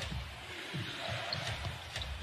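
Basketball being dribbled on a hardwood court, low thumps about every half second, over a steady hiss of arena background sound.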